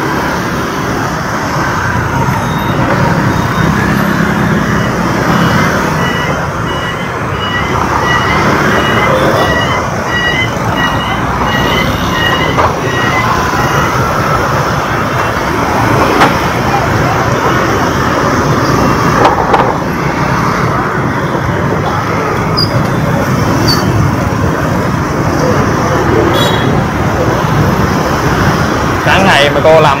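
Busy city street traffic, with engines running and vehicles passing close by. A run of short, evenly spaced electronic beeps sounds for several seconds in the first half.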